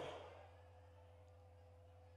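Near silence in a pause of a man's speech: the tail of the last word fades away in the first half second, leaving only a faint steady hum.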